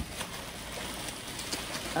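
Soft rustling and handling of packaging: plastic wrap and paper cushioning moved about in a cardboard box, with a couple of small clicks.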